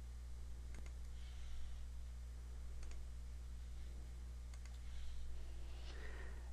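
A few faint clicks from operating a computer, some coming in quick pairs, such as key presses and mouse clicks while marking points in photogrammetry software. A steady low electrical hum runs underneath.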